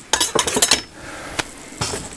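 Hard objects clinking and clattering on a workbench as radio equipment is handled and set down: a quick run of clicks in the first second, then two single knocks.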